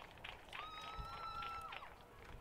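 A faint, drawn-out cheer from a spectator, one held high note lasting about a second after a goal, over the faint open-air noise of the field.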